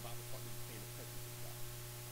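Steady low electrical mains hum on the sound feed, under a faint man's voice preaching in the first second and a half.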